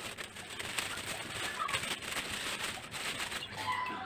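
Clear plastic packaging crinkling and rustling as it is handled and pulled off the metal parts of a wall lamp. A bird calls briefly in the background near the end.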